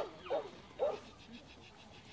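Border Collie pup giving three short, high barks in quick succession within the first second.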